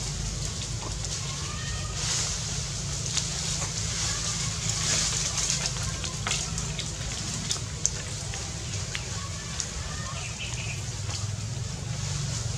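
Outdoor ambience: a steady low rumble with scattered faint crackles and clicks, and a few faint high chirping calls, twice.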